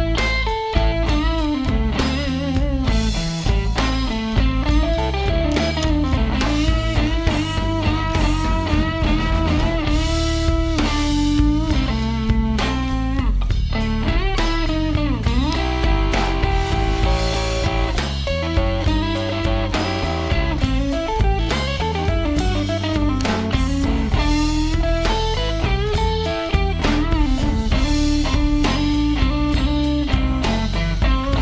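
Instrumental break of a blues song: electric guitar playing lead lines with bent notes over bass and drum kit.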